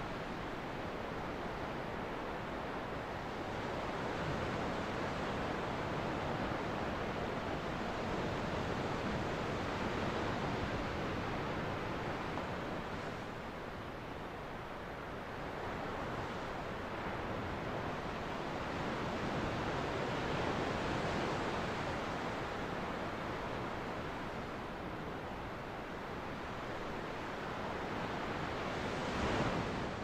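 Ocean surf: waves washing onto a beach as a steady rushing noise that swells and eases slowly over several seconds.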